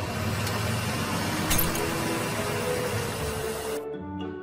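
Cartoon sound effect of a vehicle motor running: a steady, noisy rumble with a couple of clicks that cuts off suddenly near the end. Soft background music plays underneath.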